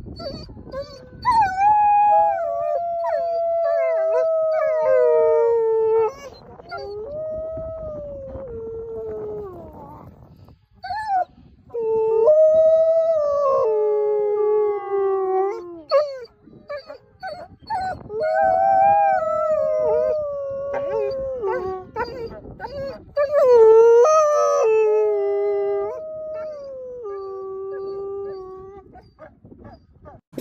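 Wolves howling: a series of long, pitched howls, each held for several seconds and sliding down in pitch at its end, with short breaks between them.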